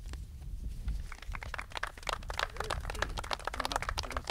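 Small audience applauding, many quick irregular claps that thicken about a second in.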